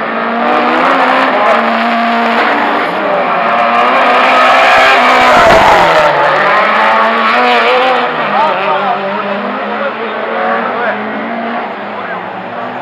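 Racing car engines revving hard as cars pass on the circuit, the pitch rising and falling, loudest about halfway through.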